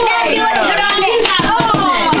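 Several voices talking over one another in a lively jumble, with hands handling and rustling wrapping paper on a present.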